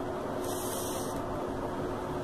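Steady background hiss with a faint steady hum, and a brighter hiss rising briefly about half a second in, for under a second.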